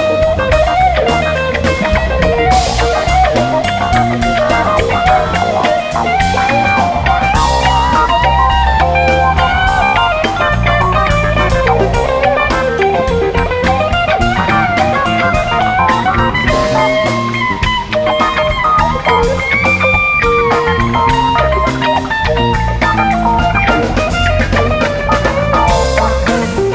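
Live rock band playing an instrumental jam at a steady, loud level: a winding lead guitar melody over bass and drum kit.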